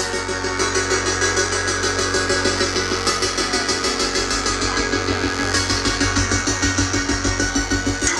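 Live band playing synth-driven dance music on keyboards, synthesizers and drums, with a steady, even beat.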